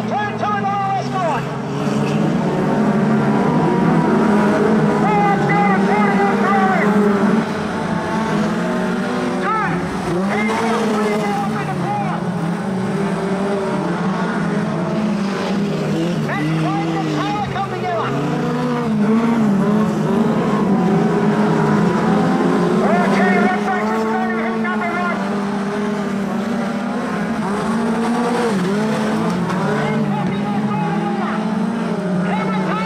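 A pack of four-cylinder speedway sedans racing on a dirt oval, several engines running at once, their pitch rising and falling as the drivers get on and off the throttle through the turns.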